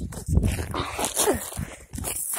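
Short whining cries that slide in pitch, over rustling and bumping as the phone is handled close to the microphone.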